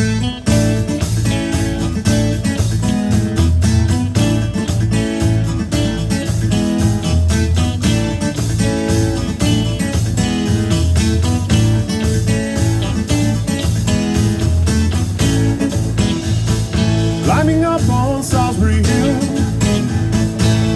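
Live band playing the instrumental intro of a pop-rock song, led by guitars, over bass, keyboard and drums, with a steady beat.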